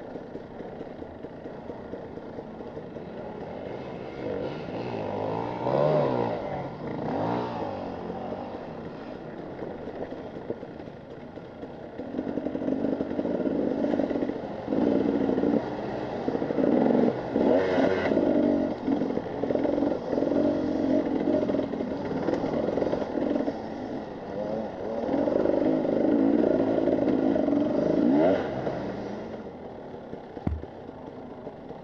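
Husqvarna TE 300 two-stroke enduro motorcycle engine being ridden on and off the throttle, its note rising and falling with each rev. It runs louder and harder from about twelve seconds in, with a quick rising rev near the end, heard from a helmet-mounted camera.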